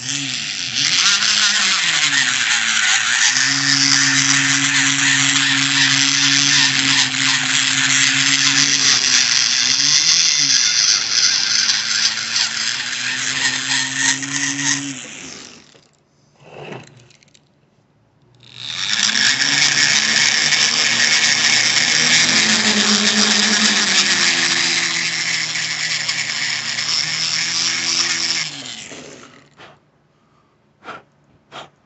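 Handheld electric rotary tool grinding the aluminium in a cylinder head's valve port, cutting the bowl under the valve seat. It runs twice, for about fifteen seconds and then about ten, with a pause of a few seconds between. Its motor hum sags and recovers in pitch as the bit bites into the metal.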